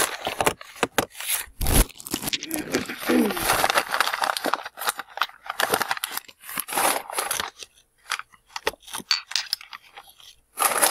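Crumpled paper packing being handled and rummaged, giving an irregular crinkling and rustling with sharp crackles. It thins out to a few scattered crackles near the end.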